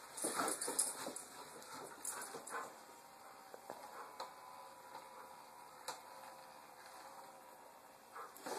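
A Doberman whining, a thin, faint whine held for a few seconds in the middle, because it wants a treat it is being teased with. Scuffles and light knocks of the dog lunging on carpet in the first couple of seconds.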